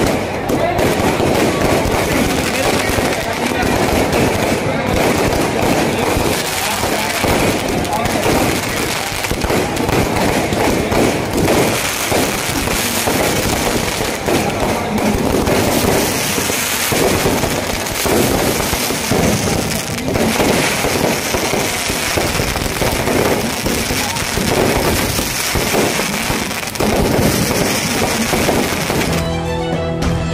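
Fireworks and firecrackers going off in a dense, continuous crackle of bangs and pops, with crowd voices beneath. Music comes in at the very end.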